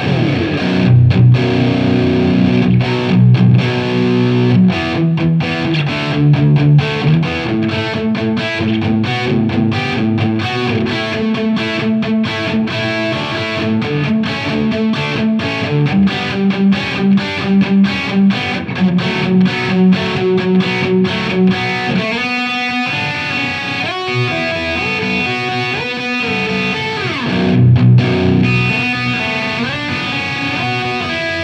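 Jackson Pro Plus Dinky seven-string electric guitar with EverTune bridge and Fishman Fluence pickups, played through the overdrive (OD1) channel of a Marshall JVM410H amp: heavy distorted riffing with many sharp, muted stops. The playing thins briefly about three-quarters of the way through.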